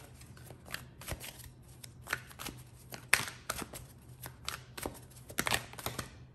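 A deck of oracle cards being shuffled by hand: a run of quick, irregular card flicks and slaps, the loudest about three seconds in.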